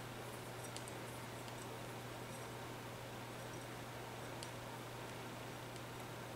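Quiet room tone with a steady low hum and a few faint ticks, as a glass is turned slowly in the hands to roll paint around inside it.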